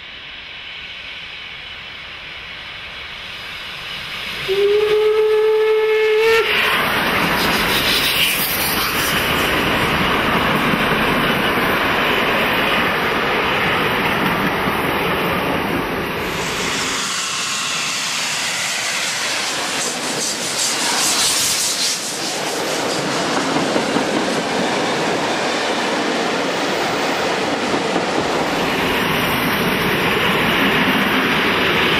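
Steam locomotive approaching under power gives one whistle of about two seconds, then passes close by, and the loud steady noise of the train gives way to the rumble and clatter of the coaches rolling past.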